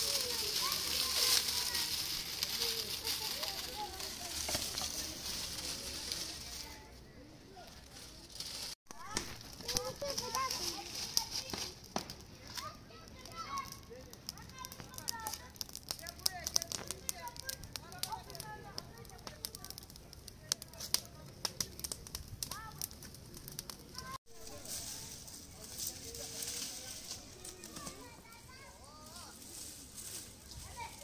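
A small open fire of fresh leafy branches crackling and snapping rapidly, busiest in the middle stretch, with leaves rustling as the branches are handled. Voices and children are heard faintly in the background.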